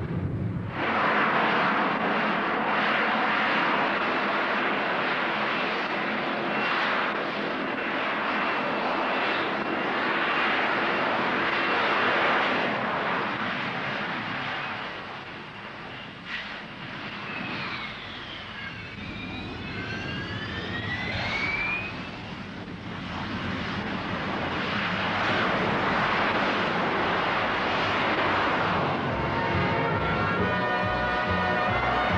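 Hawker Siddeley Harrier's Rolls-Royce Pegasus jet engine, a loud, steady jet roar. It dips in the middle, where whining tones glide up and down, then builds again near the end as the jet lifts off vertically.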